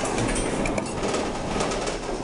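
Claw machine mechanism running as the claw and its gantry move inside the cabinet, giving a steady mechanical rattle and clatter.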